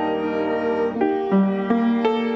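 Instrumental church music: a piano with a slow melody of long held notes, the notes changing about every half second to a second.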